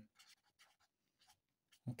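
Felt-tip marker writing on paper: a run of faint, short strokes as digits and a bracket are drawn.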